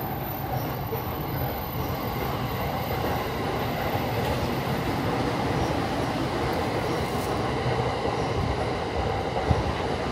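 Train running on the railway tracks beside the street, a steady noise with one short sharp knock near the end.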